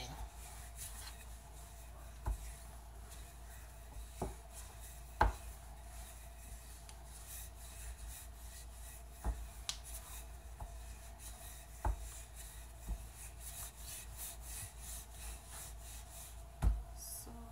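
Wooden rolling pin rolling out pizza dough on a wooden board: a soft, steady rubbing, with an occasional light knock.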